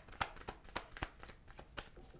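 Tarot deck being shuffled in the hands: a run of quick, irregular clicks and snaps as the cards slide and strike against each other.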